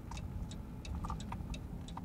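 Inside a moving car: steady low road and engine rumble, with a run of light, sharp ticks through it.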